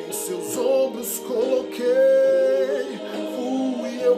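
A man singing a slow Portuguese gospel ballad, with an emotional vibrato. About two seconds in he holds one long note.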